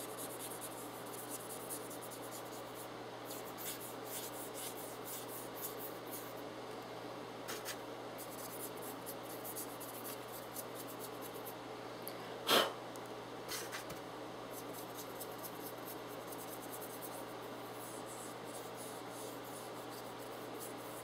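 Brush scrubbing pastel dust onto a model horse: faint, quick scratchy strokes repeating over a low steady hum, with one brief louder sound a little past halfway.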